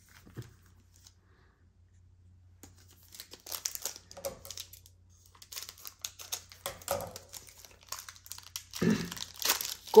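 Foil booster-pack wrapper being torn open and crinkled by hand, in irregular rustling bursts that begin about three seconds in.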